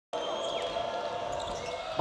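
Basketball arena ambience before tip-off: a steady background of the crowd and hall, with a few faint steady tones running under it.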